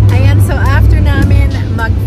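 Steady low rumble of a passenger van's road and engine noise heard from inside the cabin while driving, with women's voices calling out excitedly over it.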